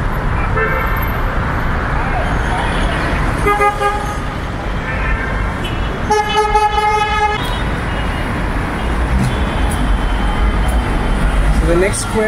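Busy street traffic with car horns honking over a steady rumble of engines. There are two short toots, about one and three and a half seconds in, and then a longer horn blast of over a second about six seconds in.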